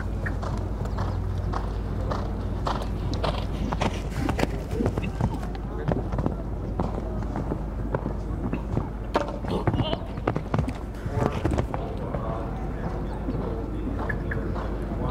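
Hoofbeats of a show-jumping horse cantering on a sand arena, a run of dull knocks, with voices talking in the background.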